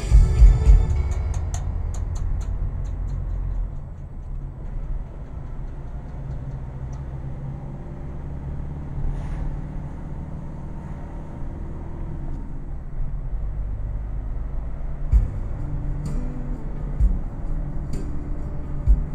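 Car engine and road rumble heard inside the cabin while driving uphill, a steady low drone with a few low thumps in the last few seconds. Music plays at the start and stops within the first two seconds.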